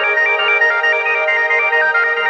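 Progressive psytrance breakdown: a bright synthesizer arpeggio of quick stepping notes, with no kick drum or bassline under it.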